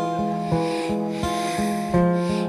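Instrumental passage of an acoustic band, with no singing: acoustic guitar and electric bass holding notes, and percussion keeping a steady beat with a scraping, shaker-like rustle over it.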